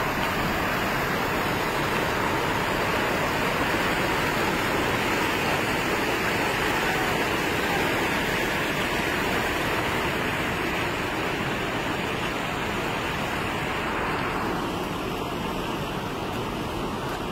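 Steady roar of a muddy flood river rushing in spate. It thins slightly near the end.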